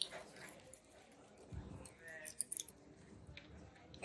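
Quiet hall with faint, indistinct voices, a few small clicks and ticks, and a soft low thump about a second and a half in.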